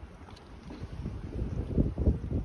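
Wind on the microphone: a low, uneven rumble that grows louder near the end.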